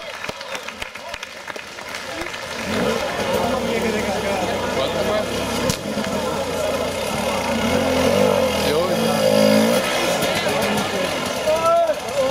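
Hard enduro dirt bike engine revving up and down under load on a steep slope, coming in about two and a half seconds in, with spectators shouting throughout.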